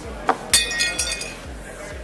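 Glass clinking with a bright ringing: one sharp strike about half a second in, then a couple of smaller clinks, over dance music with a fast steady bass beat.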